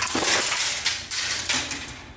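Fishing rods and reels clattering and rattling against one another as one rod is pulled out of a bundle leaning against a wall. The clatter fades about a second and a half in.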